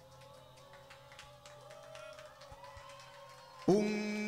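Live band music: a quiet lull with faint held notes and light soft taps, then the band comes back in loudly with sustained pitched notes about three and a half seconds in.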